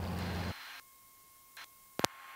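Steady low drone of a small Cessna's piston engine and propeller with a hiss over it, cut off suddenly about half a second in, leaving near silence with a faint steady tone, then a single sharp click at the end.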